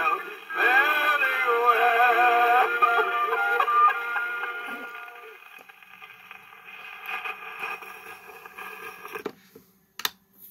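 A 1930s 78 rpm shellac record playing through a portable wind-up gramophone's acoustic reproducer: a male voice and dance band hold the song's final notes, which fade out about five seconds in. A few seconds of quieter record noise follow, then a sharp click near the end as the tone arm is handled.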